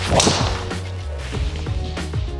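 Swish of a golf driver swinging through, a short loud whoosh right at the start that fades over about half a second, over background music.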